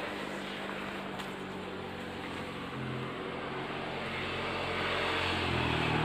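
A motor engine humming at a steady pitch, gradually getting louder, with a light rustle of leaves and undergrowth brushed by someone moving through the plants.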